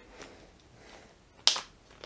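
A single short, sharp plastic click about one and a half seconds in, as a small plastic screwdriver-bit case is picked up off the table; otherwise quiet room tone.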